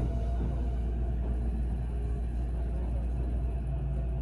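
Kintetsu 22600 series Ace electric train running along a station platform, heard from inside the passenger cabin: a steady low rumble with a faint motor tone above it.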